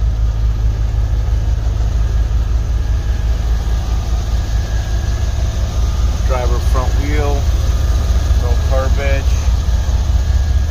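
Car engine idling: a steady low rumble.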